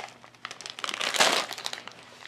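Plastic candy packaging crinkling as it is handled, in irregular bursts, the loudest just over a second in.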